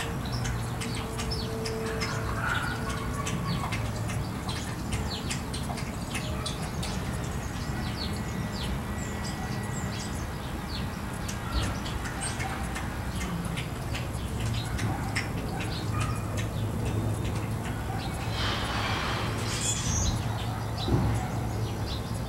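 Small birds chirping in many short, high calls over a steady low hum, with a brief rustling burst a few seconds before the end.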